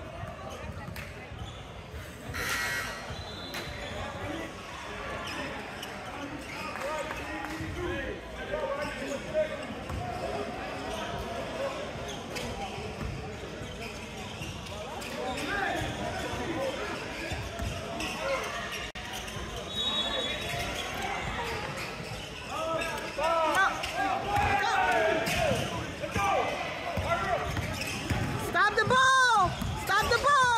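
A basketball bouncing on a hardwood gym floor during a game, with voices in the background. Rubber sneakers squeak on the court as play picks up near the end.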